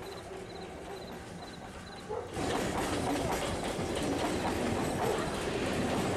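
A train running past with a continuous rumble and clatter, which swells louder about two seconds in.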